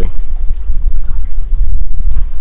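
Wind buffeting the microphone: a loud, gusty low rumble.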